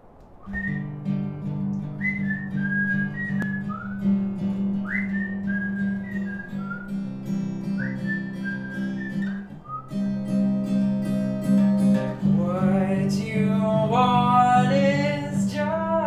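Acoustic guitar playing a steady picked pattern, with a whistled melody of short notes that slide up into their pitch over it for the first ten seconds. A man starts singing over the guitar about twelve seconds in.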